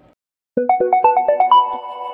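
Electronic outro jingle: silence for about half a second, then a quick rising run of short notes, about eight a second, that settles on a held chord.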